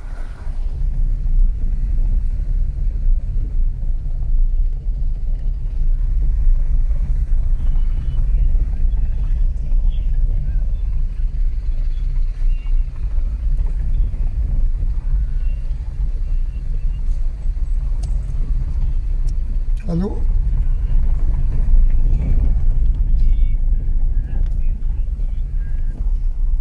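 Steady low rumble of a car driving slowly, heard from inside the cabin. About twenty seconds in, a voice briefly says 'hello'.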